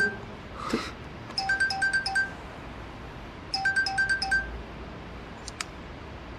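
Mobile phone ringtone: short bursts of four quick electronic beeps, repeating about every two seconds. It stops before the call is answered, and a faint click follows near the end.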